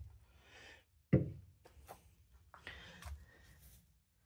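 A single sharp knock about a second in, the loudest sound, with rustling and scraping handling noise around it.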